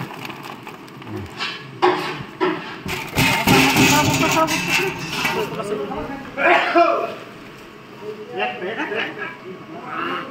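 Voices talking in the background, with a loud stretch of crackling, rustling noise about three to five seconds in.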